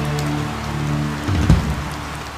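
Rain falling steadily over a sustained music chord, with a single low hit about one and a half seconds in.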